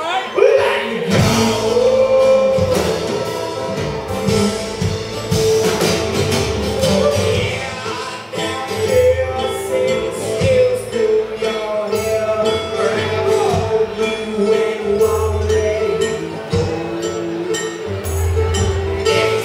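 Live acoustic string-band music: strummed acoustic guitars and a plucked upright bass, with a voice singing over them.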